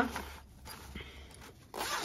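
A fabric cosmetic pouch being unzipped and handled: a faint zip and rustle of the fabric.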